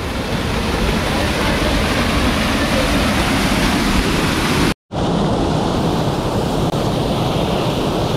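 Small waterfall pouring into a rocky pool: a loud, steady rush of falling and churning water. It drops out for a split second about five seconds in, and comes back duller, with less hiss.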